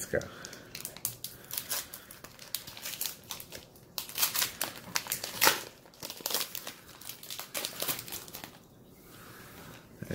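Foil wrapper of a Pokémon trading card booster pack crinkling as it is torn open by hand: a dense, irregular run of crackles that dies away about a second and a half before the end.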